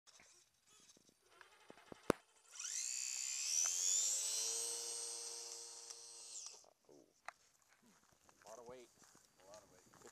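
Electric motor and propeller of a radio-controlled P-51 Mustang model spinning up with a sudden rising whine about two and a half seconds in, then held as the plane runs away along the path, growing fainter and lower, before cutting off suddenly near seven seconds. A sharp click comes just before the motor starts.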